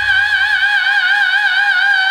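Male heavy-metal singer holding one long high note with a steady, even vibrato. The band's low end drops away under it a little under a second in.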